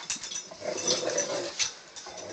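A husky and a Rottweiler at rough play, making short, irregular vocal noises with scuffles and knocks.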